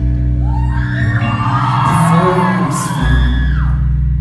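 Live synth-pop played loud through a concert hall PA, heard from the audience: the heavy low bass drops out about half a second in and comes back about three seconds in, while voices glide up and down over the keyboards.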